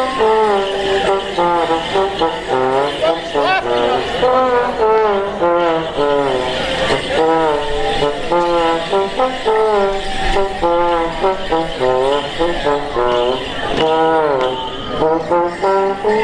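Lively instrumental morris dance tune, a quick stepping melody of short notes that plays throughout.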